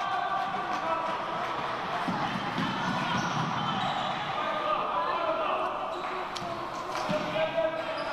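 Handball bouncing on a wooden sports-hall floor amid shouting voices in the hall, with a few sharp knocks near the end.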